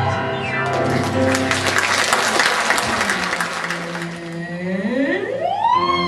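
Audience clapping over musical accompaniment for the first few seconds. Near the end a woman singer's voice slides steeply up from low to a high held note.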